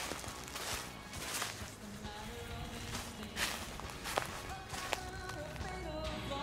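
Footsteps walking through dry leaf litter, about one step every 0.7 s, with music playing faintly underneath.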